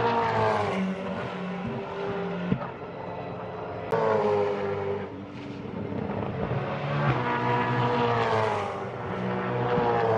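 V8 Supercars race cars passing one after another, each engine note falling in pitch as it goes by. A new car cuts in sharply about four seconds in, and another swells up and fades near the end.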